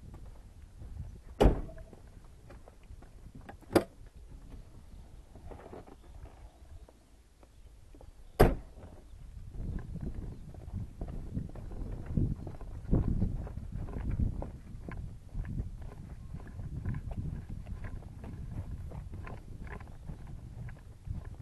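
Handling and movement noise from a moving camera rig: three sharp knocks in the first half, then uneven low rumbling and bumping as it travels over the ground.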